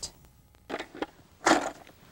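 PVC pipe twisted inside its bell-end fitting with wet primer and solvent cement, making two short scrapes a little under a second apart.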